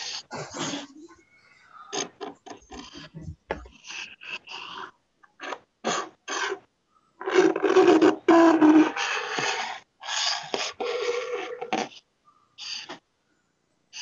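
Rubbing and scraping noises come in short, choppy bursts over a video-call connection, loudest about seven to nine seconds in. They are handling noise: a child's fingers rubbing over a handheld device's microphone and camera.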